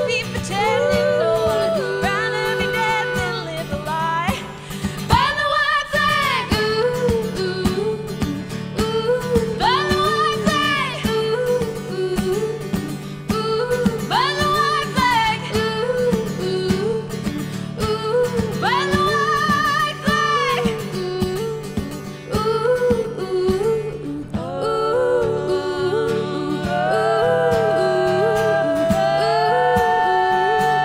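Acoustic guitar strummed steadily under wordless three-part female vocal harmony. The voices swoop up into long wavering notes about every four to five seconds, and near the end they hold a chord that steps upward.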